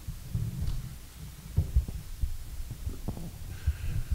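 Soft, irregular low thumps and rumble picked up by the microphones, with a few sharper knocks about a second and a half in and again about three seconds in.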